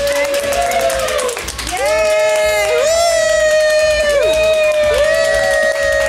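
A single voice singing a string of long held notes, each sliding up into the note and falling away at its end, over a low crowd hubbub.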